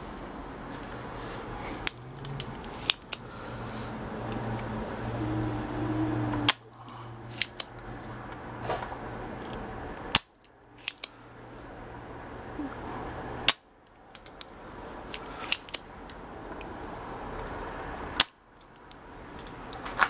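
Spring-loaded desoldering pump (solder sucker) firing four times with a loud sharp snap each time, drawing molten solder off capacitor leads on a circuit board. Lighter clicks come in between as the plunger is pushed down and reset.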